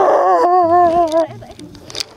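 A young man wailing loudly in an exaggerated, howling cry, the pitch wavering, then breaking off a little over a second in.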